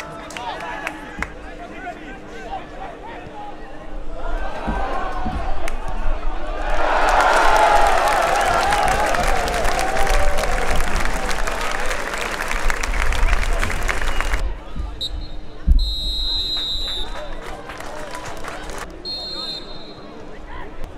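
Football crowd cheering and shouting for a goal, swelling a few seconds in, loudest for about seven seconds, then cut off abruptly. After it a single thump and short referee's whistle blasts for the restart.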